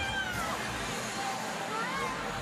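Chatter of a gathering crowd in a large room, with one high voice sliding down in pitch at the start and another sliding up near the end.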